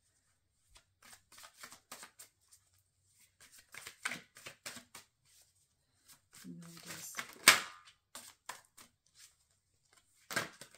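A deck of tarot cards being shuffled by hand: an irregular run of soft flicks and slaps as cards slide off the deck, with one much louder sharp slap of the cards about seven and a half seconds in. A brief hummed voice sounds just before that slap.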